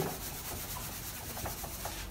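A whiteboard eraser rubbing back and forth across a whiteboard, wiping off marker writing: a faint, steady scrubbing.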